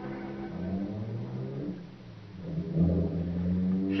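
Low sustained string music fades out, then about halfway through a low engine rumble swells up: a radio-drama sound effect of a car running.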